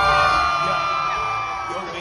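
Concert crowd screaming and whooping in long, overlapping held cries over live pop music. The bass of the backing track thins out and drops away during the cries.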